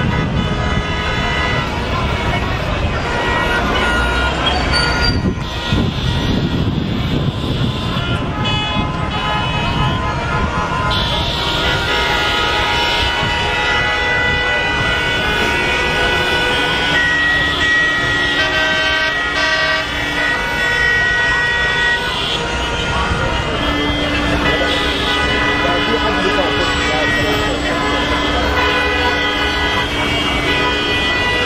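Street traffic with car horns honking over and over, including two long held horn blasts in the second half, over people's voices.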